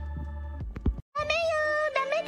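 A steady low electrical hum with a few soft knocks, then a sudden cut and, about a second in, a cartoon girl's high-pitched voice crying out in a drawn-out, whiny line whose pitch holds and then rises.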